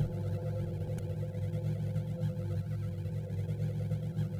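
A steady low electronic hum drone from an experimental noise-music track, with fainter steady higher tones held above it.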